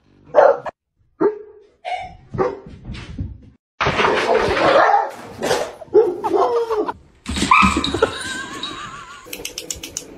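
Dogs barking and yelping in short, separate calls, then a dense, loud stretch of noisy commotion a few seconds in.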